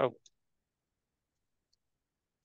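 A brief spoken "oh", then near silence broken by two faint clicks from typing on a computer keyboard.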